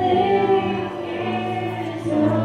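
Two women singing into microphones, holding long sustained notes, with a change of note about a second in.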